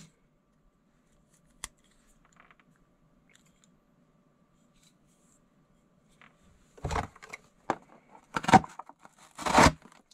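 Handling noise from a folding multitool hatchet and its cardboard packaging. There is one sharp click about two seconds in, then a quiet stretch, then a run of loud scraping and rustling knocks over the last three seconds.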